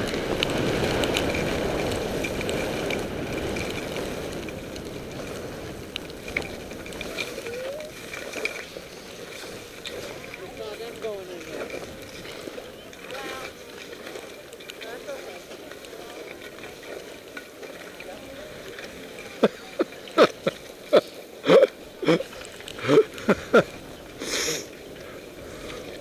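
Skis sliding over snow with wind rushing on the camera's microphone, loudest at the start and dying down as the skier slows. In the last few seconds come a run of sharp clicks and brief voices.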